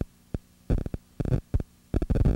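Steady electrical mains hum in the audio line, broken by several short, irregular bursts of noise that cut in and out.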